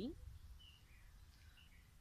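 Faint, scattered bird chirps, a few short high calls, over low steady background noise.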